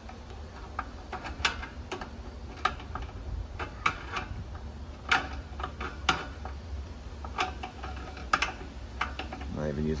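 Pliers clicking and ticking on metal as a brass nut is worked tight on a propane patio heater's burner assembly: scattered sharp clicks, roughly two a second.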